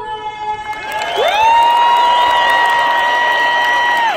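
Arena crowd cheering and applauding at the end of the national anthem. Over the crowd, a loud held tone slides up about a second in, stays steady, and slides back down at the end.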